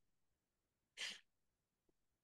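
Near silence, broken once about a second in by a short puff of noise lasting about a quarter second.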